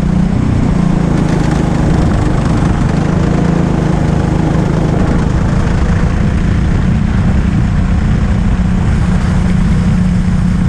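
Go-kart engine heard from the kart's onboard camera, running loud and steady at racing speed, its drone holding a fairly constant pitch.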